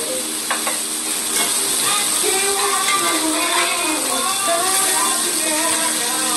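Blackened catfish fillets sizzling steadily in a hot cast-iron skillet while a spatula turns them, with softer background music underneath.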